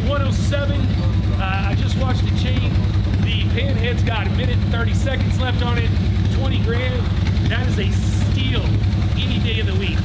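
Men's voices talking indistinctly in a large room over a steady low rumble.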